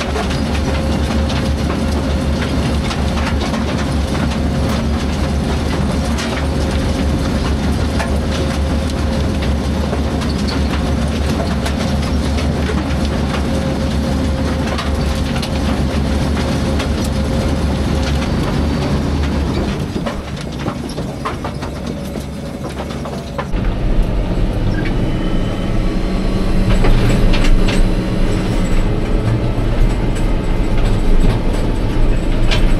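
Potato receiving hopper and conveyors running, a steady mechanical hum with potatoes knocking and tumbling. About three-quarters of the way through, this gives way to a tractor engine running, heard from inside the cab.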